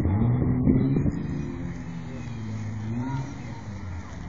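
An off-road 4x4's engine revving under load as it works an obstacle. It climbs in pitch and is loudest in the first second, then settles to a steadier lower note with a small dip and rise near the end.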